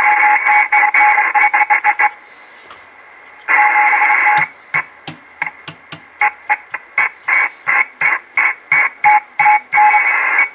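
Kenwood TS-450S receiver audio from its speaker, static with a steady tone, cutting in and out as the antenna connector is flexed: the sign of a bad connection on the board at the connector. It holds for about two seconds, drops away for about a second and a half, returns briefly, then chops on and off about two or three times a second with sharp crackles as the contact makes and breaks.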